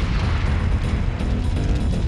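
Fireball explosion effect: a loud, continuous rush of burning flame with a heavy low rumble, with music beneath.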